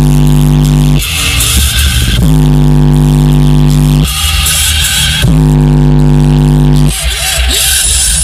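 Very loud bass-heavy electronic music from a car audio system. Long held low bass notes, each lasting one to two seconds, alternate with brighter, hissier passages.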